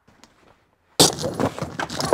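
Rope access gear being pulled out of a van's load space: metal carabiners and hardware clinking and rattling against each other, starting suddenly about a second in after a few faint clicks.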